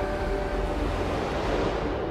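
A rushing, noise-like swell in the film soundtrack, its upper end falling away over two seconds as the preceding music dies out, with a few faint held notes lingering underneath.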